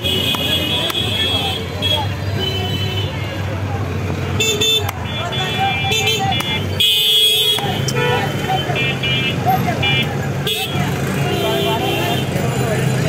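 Street-market noise of voices, running vehicle engines and short horn toots, with a few sharp knocks of a cleaver striking a wooden chopping stump as fish are cut. A loud hissing burst comes about seven seconds in.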